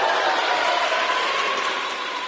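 Many choir singers clapping their hands rapidly, a dense crackle of claps, with a faint held sung note beneath.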